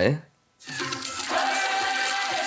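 A spoken "all right" ends at the start, then a brief dead gap. About half a second in, the animated episode's soundtrack resumes: music of sustained tones over a steady hiss.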